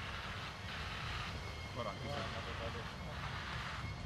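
Quiet outdoor ambience on a golf green: a steady faint rushing noise, with faint distant voices about two seconds in.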